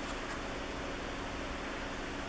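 Steady background hiss with a faint low hum; no distinct handling sounds stand out.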